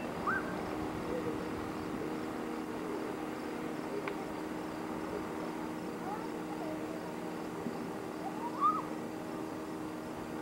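Outboard motorboats running out on the lake, a steady low drone. A few short calls that rise and fall in pitch come over it, the loudest near the end.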